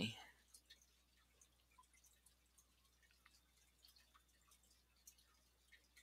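Near silence, with a few very faint scattered ticks.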